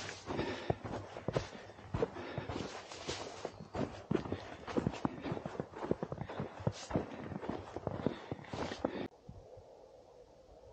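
Boots crunching through snow at a walking pace, with rustling of brushed spruce branches and clothing, until the sound cuts off abruptly about nine seconds in.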